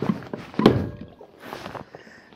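Kayak pedal drive being pulled up out of its hull well: a series of knocks and clunks, the loudest a heavy thunk about two-thirds of a second in, and a brief hiss of water near the end.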